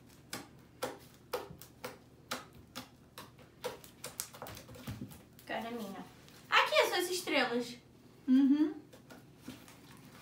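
Homemade slime being pressed and squeezed by hand, giving quick sticky clicks and pops at about three a second. A voice breaks in twice in the second half.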